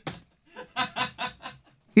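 A man chuckling: a short run of about five quick laughs, starting about half a second in.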